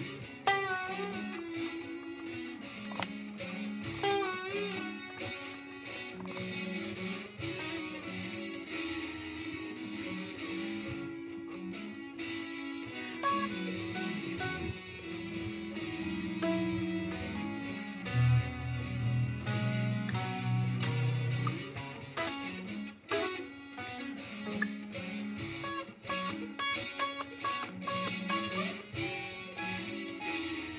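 Electric guitar, a Stratocaster-style with single-coil pickups, played live over several looped guitar layers from a looper pedal: low sustained notes under picked melodic lines.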